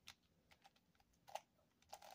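Faint, scattered clicks of a Yuxin 5x5 Pyraminx's plastic layers being turned by hand. The clearest click comes about two-thirds of the way in.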